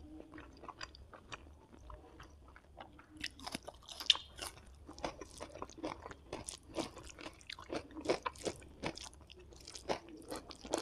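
Close-miked crunch of teeth biting into a fresh cucumber slice about four seconds in, followed by rapid, crisp chewing crunches. Softer scattered mouth clicks come before it.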